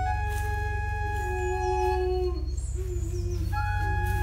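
Small pipe organ sounding several long, overlapping held tones in a slow contemporary piece. Partway through, some of the lower notes waver and bend in pitch, over a steady low hum.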